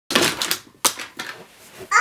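Large cardboard jigsaw puzzle pieces tipped out of cupped hands onto carpet. They clatter and rustle in a few quick bursts as they fall and slide. A child's voice starts just at the end.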